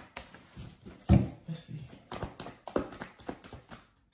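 Tarot cards being handled: a run of about a dozen irregular light slaps and clicks, the loudest about a second in.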